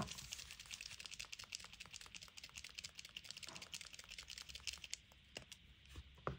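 Acrylic paint marker being primed: a fast run of faint clicks and taps from the marker being worked to get the paint flowing, thinning out in the last second.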